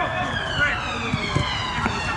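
A siren wailing, its pitch sliding slowly down and starting to climb again at the end, over outdoor background noise with a few dull thuds.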